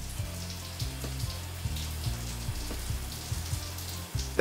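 Shower running: a steady hiss of spraying water, over soft background music with a repeating low bass line.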